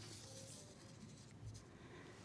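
Near silence: quiet room tone from the speaker's microphone, with a faint soft rustle about one and a half seconds in as her notes are handled at the lectern.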